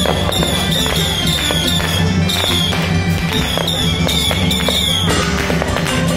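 Aerial fireworks bursting and crackling overhead in a rapid run that stops about five seconds in, over continuous procession music.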